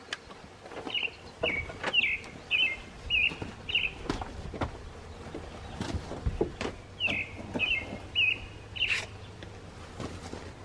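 A bird calling in two runs of short, down-slurred chirps, about two a second: six notes, a pause, then five more. Scattered knocks and clunks from a heavy car seat being handled.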